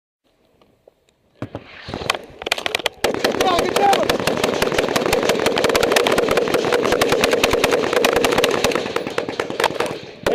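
Automatic gunfire in a firefight: a few scattered shots from about a second and a half in, then a rapid, unbroken stream of shots from about three seconds on, running loud until near the end.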